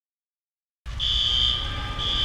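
Silence, then a little under a second in a steady high-pitched electronic tone starts over a low rumble, sounding like an alarm or buzzer.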